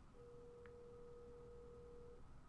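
Near silence apart from a faint, steady single-pitched tone held for about two seconds.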